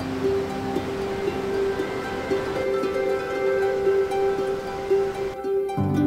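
Background music with gentle plucked-string notes over the steady rush of a fast-flowing, swollen brook. The water sound cuts out suddenly near the end, leaving only the music.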